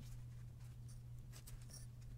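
Faint scratching and rustling of small fabric squares being handled and pinned onto a foam egg, with a few quick light ticks about a second and a half in.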